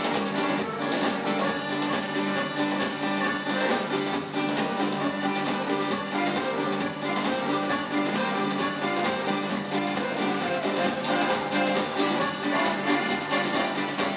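Live acoustic band playing an instrumental passage without vocals: strummed acoustic guitars and accordion over a steady drum rhythm.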